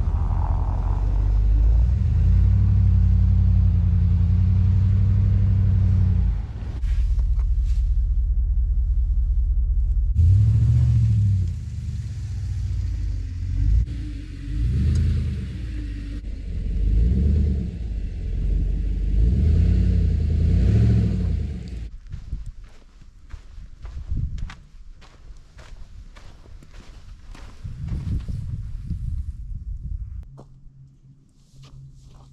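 2020 Ram 1500 Rebel pickup's engine running as the truck moves slowly over a snowy trail, a steady low drone at first, then rising and falling in swells. In the last several seconds it gives way to scattered crunching clicks in the snow.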